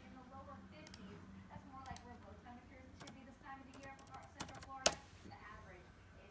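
Scattered light clicks at a computer, a few single clicks and a quick cluster near the end, the strongest just before the end, over faint background voices.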